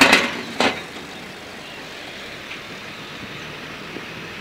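Motorcycle riding over a potholed street: two sharp knocks within the first second, then steady road and wind noise.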